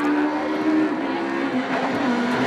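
Citroën Saxo Super 1600 rally car's engine held at high revs as it climbs. Its note dips briefly about halfway, then carries on.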